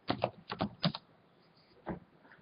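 Computer keyboard keys being typed: a quick run of keystrokes in the first second, then a pause and one more click near the end.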